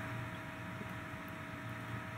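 Steady background hiss with a low hum and two faint steady tones running under it: room tone, with no distinct event.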